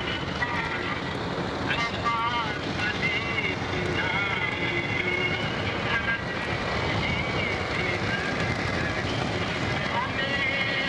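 Steady road and engine noise heard from inside a moving car, with a wavering voice faintly over it at intervals.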